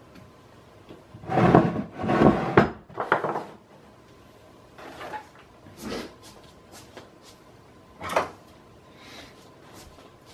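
Knocks and clatter of hand tools being rummaged through and picked up, loudest and busiest between about one and three and a half seconds in, then a few single knocks.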